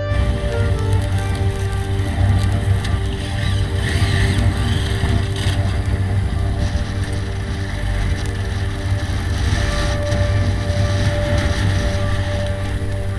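Background music laid over the helmet-camera sound of a motorcycle ride: the engine running, with wind buffeting the microphone. The ride sound cuts in suddenly at the start, under the music.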